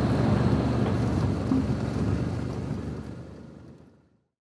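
Adventure motorcycle riding along: a steady engine drone mixed with wind noise on the helmet-mounted microphone, fading out over the last second.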